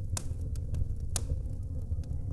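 AI-generated fireplace sound effect playing: a steady low rumble of fire with scattered sharp crackles.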